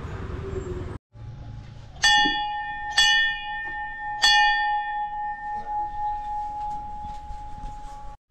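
A small hanging temple bell struck three times, about a second apart. Its single clear tone rings on after each strike and slowly fades. Before it, about a second of outdoor background noise.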